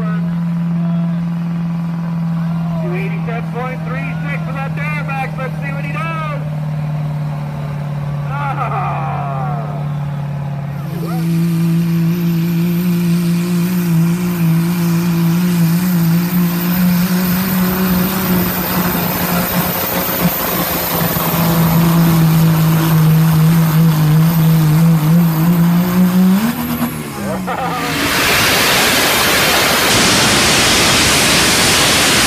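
Diesel pickup trucks pulling a weight-transfer sled at full throttle, each engine holding a steady high-rpm note, with people's voices over the first truck. About a third of the way in a second, louder truck takes over; near the end its engine briefly revs higher and drops off. A loud, even rushing noise then takes over.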